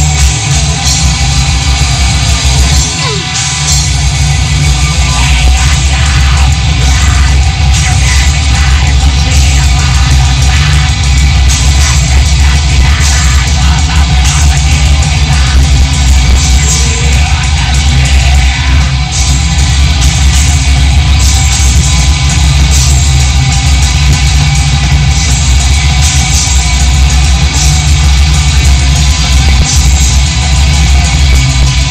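Black metal band playing live at full volume: a dense, unbroken wall of distorted electric guitars over a drum kit, with heavy bass.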